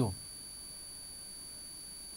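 Quiet room tone with a faint, steady high-pitched electronic whine, the tail of a spoken word cut off right at the start.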